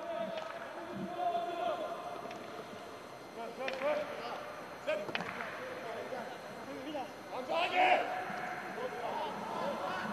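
Football match with no crowd: faint shouts of players calling to each other on the pitch, and a few sharp thuds of the ball being kicked, one about four seconds in and another about five seconds in.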